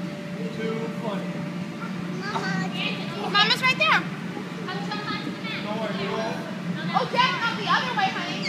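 Children's voices calling out and squealing, loudest about three seconds in and again near the end, over a steady low hum.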